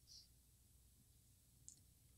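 Near silence: faint room tone with two small clicks, one just after the start and one near the end.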